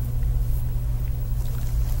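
A steady low hum, with nothing else standing out above it.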